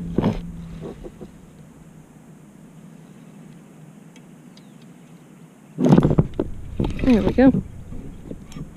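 A woman's wordless voice, wavering in pitch, about seven seconds in, just after a loud knock of handling on the kayak or gear about six seconds in; before that only faint outdoor background.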